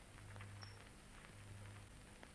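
Near silence: a faint steady low hum and hiss on the soundtrack.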